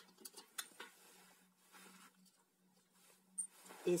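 Gloved hands handling the opened plastic handle housing and wiring of a disassembled angle grinder: a few short, sharp clicks in the first second, then faint scattered ticks and rustles, over a steady low hum.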